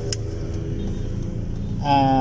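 Steady low rumble of car cabin noise: engine and road noise heard from inside a car.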